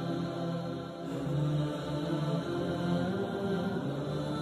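Background music of slow, chant-like vocal humming on long held notes, with no words.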